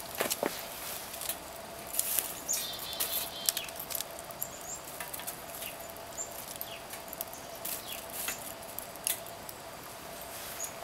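Small wood fire crackling in a folding steel stick stove, with irregular sharp pops and snaps. A denser run of snaps and rustles comes about two to four seconds in, as twigs are handled and fed into the firebox.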